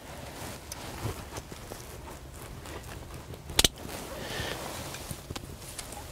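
Rustling of clothing and gear being handled, with scattered small clicks and a sharp double click about three and a half seconds in.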